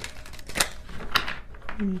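A tarot deck being handled by hand, most likely shuffled before clarifier cards are drawn: a run of irregular sharp card clicks, a few louder than the rest.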